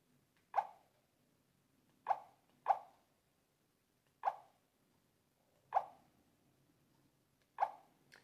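A dog barking six times, single short barks at uneven intervals.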